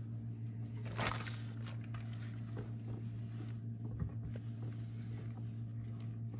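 Gloved hands pressing and turning a chicken breast in a glass bowl of flour: soft pats, with a brief rustle about a second in and a couple of small knocks later. A steady low hum runs underneath.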